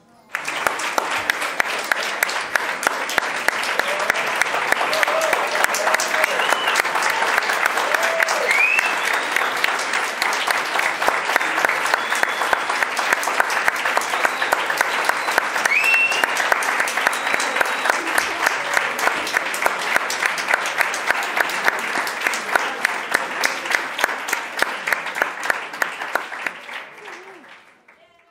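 Audience and panelists applauding, with louder claps keeping an even beat of about three a second and a few voices calling out. The applause fades out near the end.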